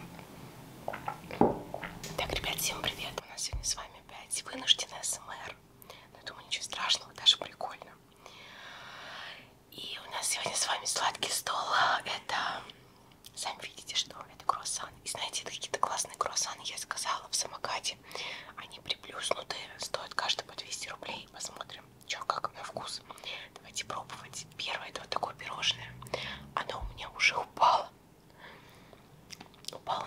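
Close-miked chewing and mouth sounds of a person eating pastry, with many small clicks and smacks, mixed with whispered talk.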